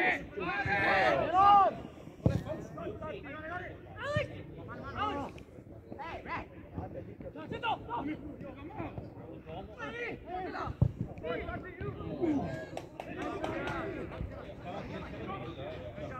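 Players on a football pitch shouting and calling to each other, the words unclear. A couple of sharp knocks stand out, one about two seconds in and one near eleven seconds.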